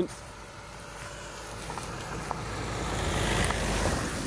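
A car driving past on a narrow track, its engine and road noise swelling steadily louder as it approaches and is loudest near the end as it powers on past.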